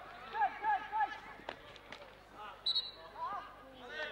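Field hockey players and onlookers shouting and calling, with a couple of sharp stick-on-ball clicks about one and a half seconds in and a short, high whistle blast a little after the middle.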